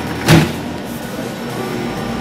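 A brief bump about a third of a second in as a plastic-wrapped frozen package is handled on the wire shelf of a reach-in freezer, over a steady machine hum.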